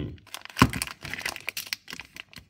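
Plastic mail pouch crinkling and crackling as it is handled and pulled at to open it, with one sharp crack about half a second in followed by a run of quick crackles.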